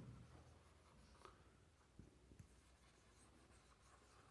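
Faint marker pen writing on a whiteboard, with a few soft strokes and taps of the tip against the board.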